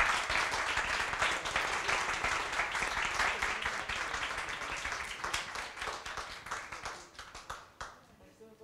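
An audience applauding: many hands clapping together, thinning out to scattered claps and fading over the last couple of seconds.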